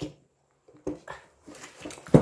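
Handling noise: a sharp knock about a second in, then faint rustling and light clatter as a fabric shoulder bag is opened and handled.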